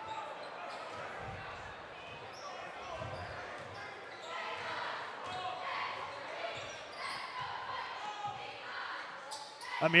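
A basketball being dribbled on a hardwood gym floor, with low thuds during the first few seconds, under the steady chatter of a crowd in a large gym.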